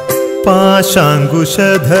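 Malayalam Hindu devotional song: a short instrumental passage gives way about half a second in to a voice singing a gliding, ornamented melody over sustained accompaniment.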